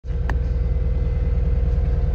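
Caterpillar 259D compact track loader's four-cylinder diesel engine running steadily, heard from inside the enclosed cab: a low, evenly pulsing rumble with a steady hum above it. A single brief click comes near the start.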